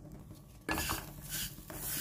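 Spatula stirring and scraping grated coconut, peanuts and seeds as they dry-roast in a nonstick kadai, starting about two-thirds of a second in.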